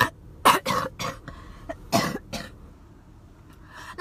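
A woman coughing: a run of about five short coughs over the first two and a half seconds, the strongest about two seconds in, followed by a quieter stretch.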